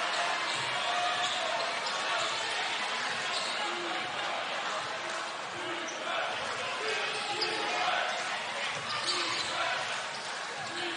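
Basketball game sound in an arena: a steady crowd murmur with a basketball dribbling on the hardwood court as players move the ball around.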